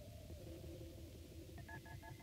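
Faint electronic tones: a held tone that steps down in pitch about half a second in, over a low rumble, then a quick pulsing pattern of short, higher beeps starting near the end.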